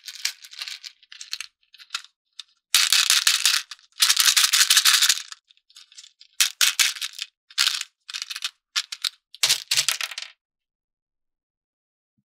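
Small plastic beads rattling and clicking as they are handled in a plastic tray and a small plastic toy bottle. It comes in irregular bursts, with two longer, louder spells in the first half and shorter bursts after, and stops about two seconds before the end.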